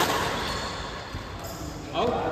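Badminton racket striking a shuttlecock: one sharp hit right at the start that rings on in a large hall, and another hit near the end.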